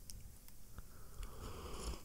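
A person sipping a drink from a ceramic mug close to the microphone: a few small clicks, then a short soft sip in the second half.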